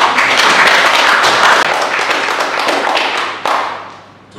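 Audience clapping, many hands at once, starting suddenly and louder than the speech around it, then dying away just before the end.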